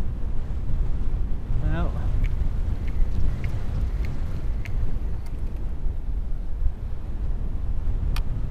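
Wind buffeting the microphone: a steady, loud low rumble. A short murmur from the man comes about two seconds in, and a few faint ticks follow over the next few seconds.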